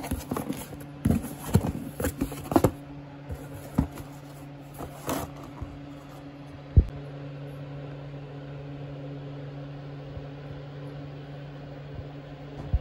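A cardboard delivery box being opened and handled: cardboard rustling and scraping with sharp clicks through the first five seconds, then one sharp knock about seven seconds in. A steady low hum runs underneath throughout.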